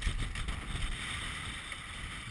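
Wind buffeting the camera microphone over a steady low rumble and hiss of wind and water around a small boat.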